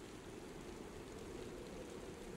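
Faint, steady rain: an even hiss with no distinct drops standing out.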